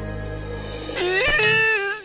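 Cartoon background music, joined about a second in by a long, wavering vocal cry from an animated character that stops near the end.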